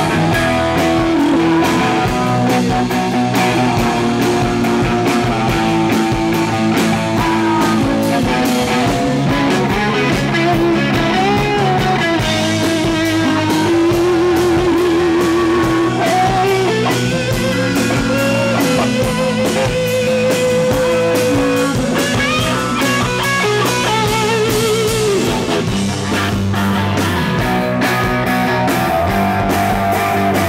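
Live rock band playing an instrumental passage: an electric guitar plays a lead line with bent notes and vibrato over a drum kit.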